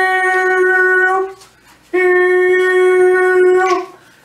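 A man's voice holding long, steady high notes at one pitch. The first note runs on until about a second in; after a short pause a second note starts about two seconds in and lasts nearly two seconds, dipping slightly in pitch as it ends.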